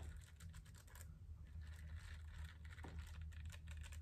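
Faint, rapid, irregular clicking and scratching of fingers running over and flicking the rubber bristles of a pet hair brush, over a low steady hum.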